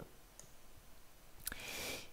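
Faint computer mouse clicks: a light one about half a second in and a sharper single click about one and a half seconds in, followed by a brief soft rush of noise.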